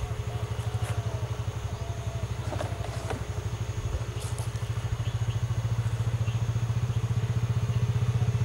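A vehicle engine idling steadily, with an even, rapid low pulse.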